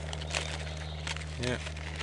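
Cardboard carton being handled and pulled open, crinkling with scattered short, sharp clicks, over a steady low hum.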